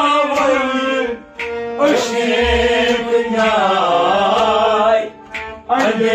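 Kashmiri Sufi song performed live: a man singing a melismatic, gliding melody over a harmonium and a bowed string instrument, with two short breaks between phrases, about a second in and near the end.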